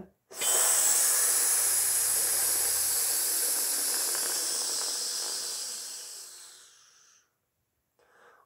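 A man exhaling on a sizzle: one long, steady 'tsss' hiss through the teeth, a controlled exhale in a wind player's breathing exercise. It fades away and stops about seven seconds in.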